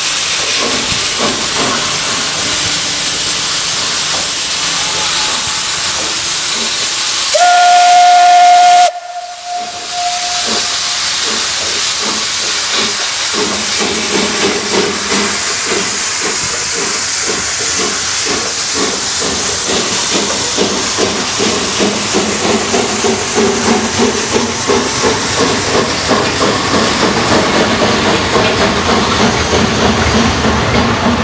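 Steam locomotive hissing steam at a standstill, then one short steam whistle blast about seven seconds in that cuts off abruptly. From about eleven seconds it starts away, its exhaust beating in a steady rhythm that quickens as it gathers speed.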